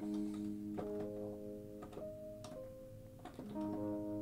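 A soft electric-keys software instrument playing quietly: a held chord, a few higher notes moving over it, then a new chord about three and a half seconds in.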